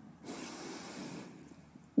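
A Quran reciter's quiet breath drawn in close to the microphone, lasting about a second, taken in the pause before his next sung phrase.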